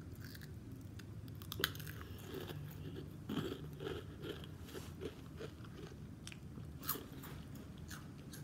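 A person chewing and biting food close to the microphone, with irregular wet crunches; the sharpest crunches come about one and a half seconds in and again near seven seconds.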